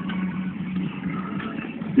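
Car engine and road noise heard from inside the cabin of a moving car: a steady low hum under an even rush.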